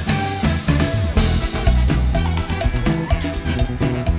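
Live band playing an upbeat Latin number at full volume, with a strong bass line and busy timbale and cymbal strokes driving the rhythm.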